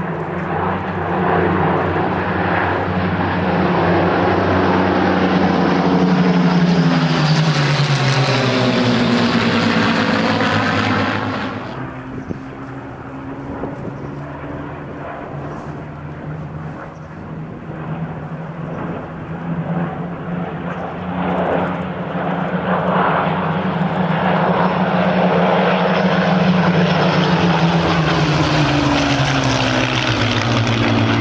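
The piston engines of a formation of four Supermarine Spitfires (Rolls-Royce Merlins) droning overhead. The sound swells and falls in pitch as the formation passes, drops away suddenly about twelve seconds in, then builds and rises in pitch again as the aircraft come round once more.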